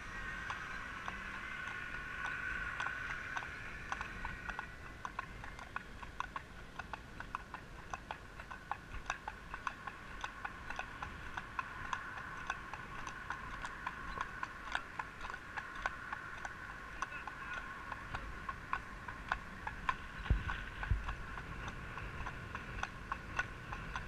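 Horses' hooves clip-clopping on a tarmac road, a continuous run of sharp clicks several times a second, over a steady background hum.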